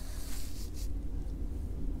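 Quiet low steady rumble with faint rustling, typical of handling noise from a handheld camera being moved close to the microphone. There is no distinct event.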